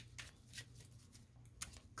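Faint, sparse rustles and soft clicks of a tarot deck being handled and shuffled by hand.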